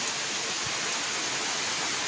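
A steady, even hiss of background noise with no change through the pause.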